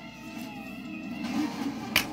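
A plastic DVD case clicking open near the end, over a faint background with a few low wavering tones.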